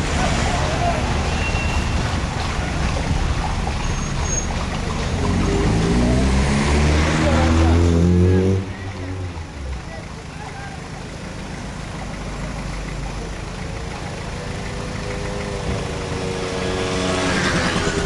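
A motor vehicle's engine accelerating, its pitch climbing for about three seconds before it cuts off sharply a little past the middle; later a second engine hum rises and holds for a few seconds.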